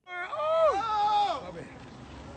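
A person's drawn-out vocal shout, held for about a second and then sliding down in pitch, followed by low background noise.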